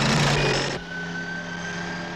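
Car engine at high speed with a loud rush of road and wind noise. About a second in it cuts to a quieter, steady engine drone.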